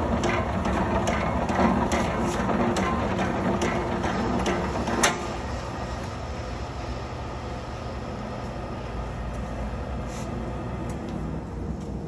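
Globe 3850 commercial meat slicer running in automatic mode: the carriage drive works back and forth with a knock at each stroke, about two a second, over a steady motor hum. About five seconds in the carriage stops with one louder clunk, and the motor keeps humming more quietly.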